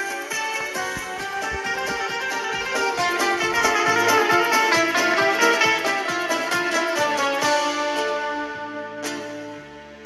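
Background instrumental music with quick plucked-string notes, fading down near the end.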